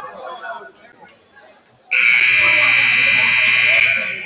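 Gym scoreboard horn giving one loud, steady blast of about two seconds. It starts suddenly about halfway in, over crowd chatter.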